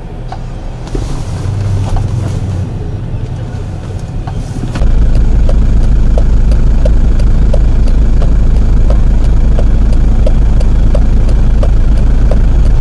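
A heavy engine running steadily, a loud low rumble with a faint regular ticking, cutting in abruptly about five seconds in. Before it there is only quieter background noise with a low hum.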